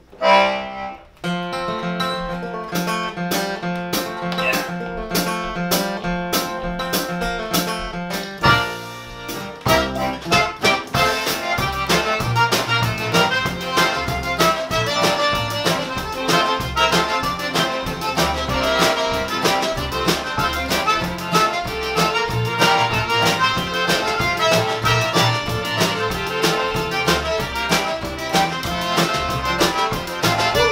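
Cajun band playing a two-step-style tune. A Cajun button accordion leads the intro for about the first eight seconds. Then fiddle, acoustic guitar, upright bass and drums come in together on a steady dance beat.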